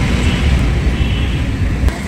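Loud, uneven low rumble of street noise on a handheld phone microphone, with no clear pitch or rhythm, and a short click near the end.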